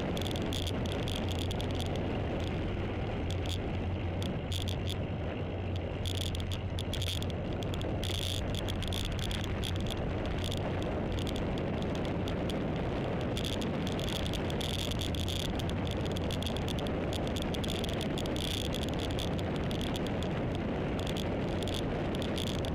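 Steady road and wind noise from a camera riding on a moving vehicle, with a constant low hum underneath. A high insect buzz from the roadside comes and goes every second or two.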